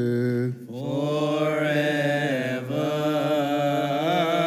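A male voice chanting a Coptic Orthodox liturgical hymn in long held notes with melismatic turns, breaking off for a breath about half a second in, then carrying on.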